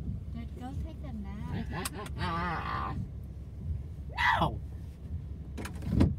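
Low steady rumble of a car's engine and road noise heard from inside the cabin, with short bursts of voices, one falling vocal sweep and a few sharp clicks over it.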